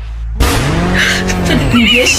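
A car-engine sound that starts suddenly about half a second in, rising and then falling in pitch once over about a second, with a hissing edge.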